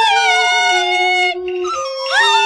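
Beiguan luantan music led by a shrill reed wind instrument, a suona, playing loud held notes that slide from pitch to pitch. The line breaks off briefly about a second and a half in, and a new phrase starts just before the end.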